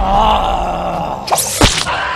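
A cartoon character's pained, wavering cry for about a second, followed by a quick series of sharp hits.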